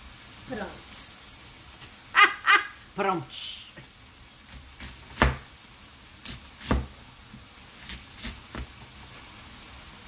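Knife cutting through a wedge of raw cabbage onto a cutting board: a few separate chops, the two loudest about five and just under seven seconds in, with a laugh in the first few seconds.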